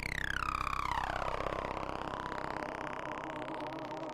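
Synthesized tone sliding down in pitch over about a second and a half, over a steady electronic drone, then a fainter tone sweeping back up.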